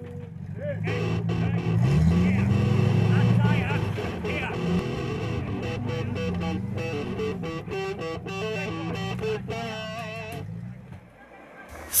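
Background music with guitar laid over a modified off-road car's engine revving up and falling back as it crawls over rocks. The engine and music fade out near the end.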